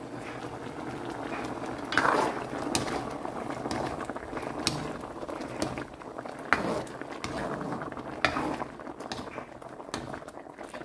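Cassava chunks in coconut milk bubbling steadily in a pan at a simmer, the coconut milk not yet absorbed. A few sharp knocks are heard as the pan is stirred with a spatula.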